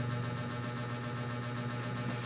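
Steady low electrical hum with a faint hiss behind it, unchanging, with nothing else happening.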